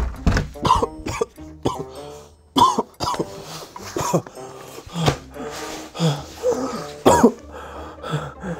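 A man's short grunts and coughs of effort, one or two a second, as he scuffles on a bed, over background music. The loudest burst comes about seven seconds in.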